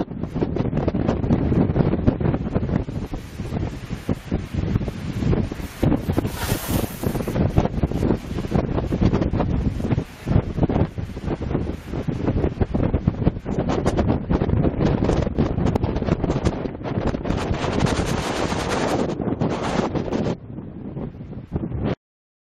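Wind buffeting a camera's microphone outdoors: a loud, rough rumble full of crackle, easing off a little near the end.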